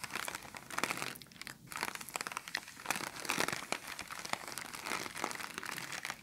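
Clear plastic bag crinkled close to the microphone: a dense run of sharp crackles, with a short lull about one and a half seconds in.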